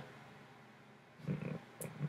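A short, low grunt-like vocal noise about a second and a quarter in, after a near-quiet pause, followed by a faint click.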